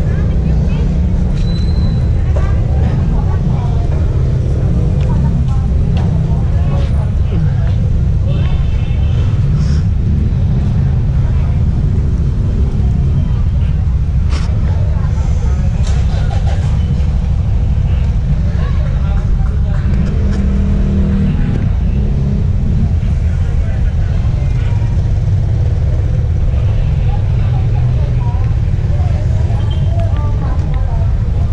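Steady low rumble of street traffic on a wet road, with people's voices faintly in the background.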